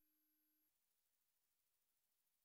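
Near silence: the audio drops out completely.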